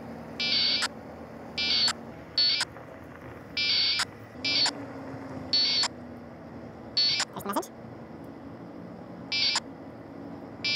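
Packet radio data going back and forth over a handheld ham radio during a Winlink connection session: about eight short bursts of buzzing digital tones, with sharp clicks between them, as packets are exchanged with the gateway.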